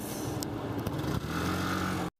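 Busy city street traffic, with a motorcycle engine coming close in the second half. A brief click about half a second in.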